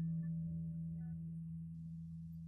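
Soft ambient guitar music at a pause: one low note keeps ringing and slowly dies away, with a faint higher note about halfway through.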